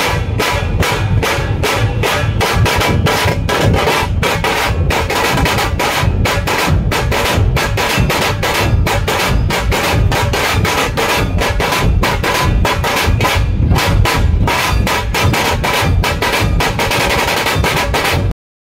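Music driven by fast, steady drumming, several drum strokes a second, with some pitched sound beneath.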